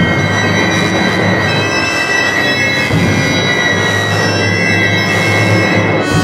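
Symphony orchestra playing loud, sustained sound masses, with many high held tones over a dense low layer and no melody.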